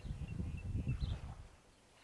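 Outdoor ambience: a low, irregular rumble of wind on the microphone for about a second and a half, then dying away. Faint high bird chirps sound over it.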